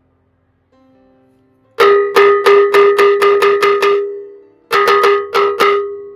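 Soundtrack music: a struck, bell-like metallic percussion note rung rapidly, about three to four strikes a second, each strike ringing on a steady pitch. A run of about nine strikes starts about two seconds in, and after a brief pause a second run of about five follows, over a faint held background tone.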